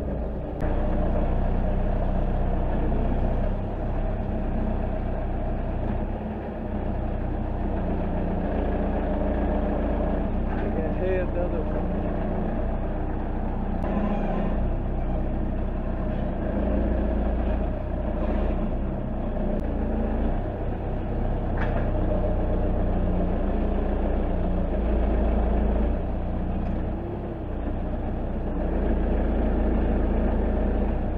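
Manitou telehandler's diesel engine running steadily at low revs while its feeding bucket tips feed into the cattle trough.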